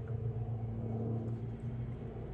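A steady low mechanical hum with a low rumble beneath it, unchanging throughout.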